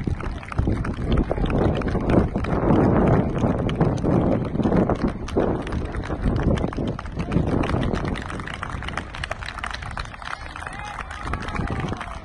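Clapping from a group of people, with voices and wind buffeting the microphone. It is loudest in the first half and eases off after about eight seconds.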